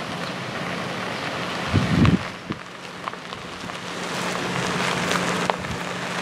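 Renault Arkana rolling slowly along a gravel track, its tyres crackling over the gravel, with a steady low hum. A low thump about two seconds in.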